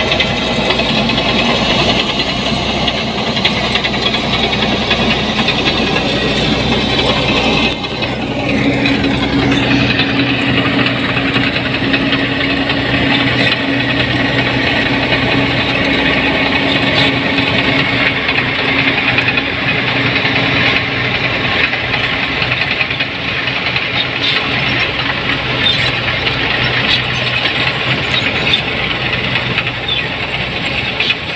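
New Holland 8060 combine harvester's diesel engine running as the machine travels on its tracks, a loud steady mechanical din. About eight seconds in the sound shifts and a steady low hum comes in.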